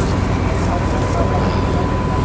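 Steady low rumble of an idling vehicle engine, with faint voices of a crowd.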